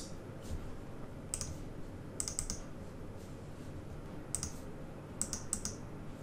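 Scattered clicks of a computer mouse and keyboard, a single click or a quick group of two or three every second or so, faint against a low room background.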